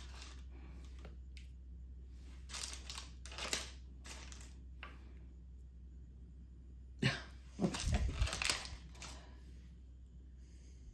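Kitchen handling sounds as butter is trimmed and added to reach its weight on a scale: a few short scrapes and taps in the middle, then a busier run of them near the end.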